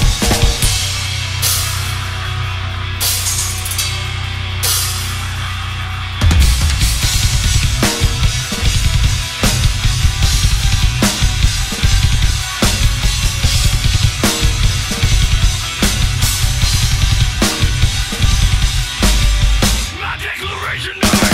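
Drum kit with Meinl cymbals played live over a heavy metal backing track. For the first six seconds crash cymbals are struck about every one and a half seconds over a held low chord. About six seconds in, fast bass drum and cymbal playing comes in.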